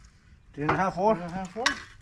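A man's voice speaking a few words, with a single short sharp click about a second and a half in.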